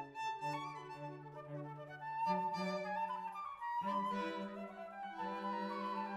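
A flute trio of flute, upper string and cello playing classical chamber music in sustained notes, the cello's low line moving up in pitch partway through.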